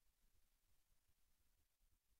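Near silence: a faint noise floor of low rumble and hiss.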